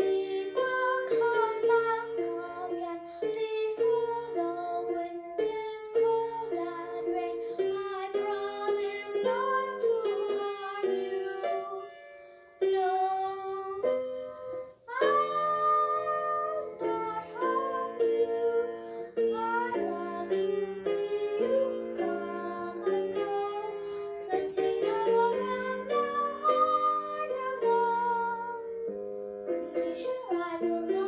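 A girl singing a song with instrumental accompaniment, her voice gliding between held notes over a steady run of chords, with a short break in the sound about halfway through.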